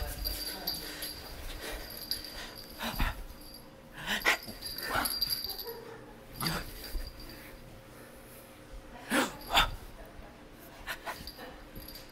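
A Yorkshire terrier giving short, separate barks every second or two, the two loudest close together about nine seconds in.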